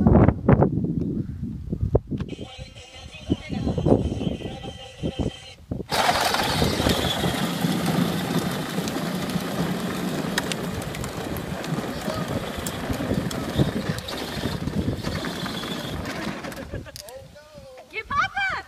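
A child's battery-powered ride-on toy pickup truck driving on asphalt: its small electric motor and hard plastic wheels give a steady noise that comes in abruptly about six seconds in and runs until near the end.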